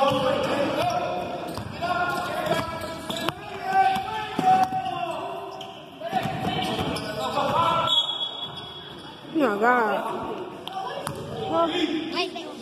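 A basketball bounced on a hardwood gym court during play, with spectators' voices calling out over it.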